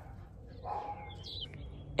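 A dog barking faintly, one short bark about two-thirds of a second in, with a high chirp shortly after.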